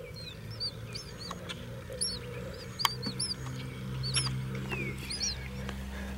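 Small bird chirping: short, high-pitched chirps repeated irregularly about once a second, over a low steady hum.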